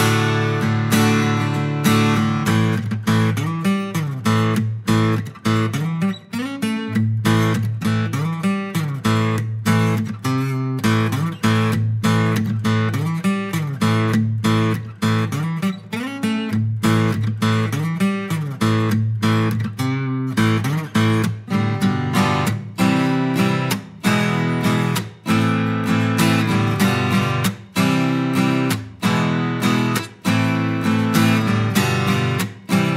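Maestro Raffles IR CSB D acoustic guitar, with Indian rosewood back and sides and a double top, strummed in a steady rhythm through changing chords.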